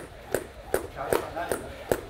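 Skipping rope slapping a gym mat on each turn, in a steady rhythm of about two and a half strikes a second.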